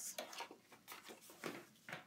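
A sheet of patterned scrapbook paper being handled and set aside, in a few brief faint rustles.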